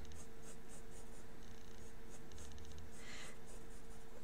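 Pen scratching on paper as a drawing is sketched: runs of short, quick strokes with brief pauses between them, faint, over a low steady hum.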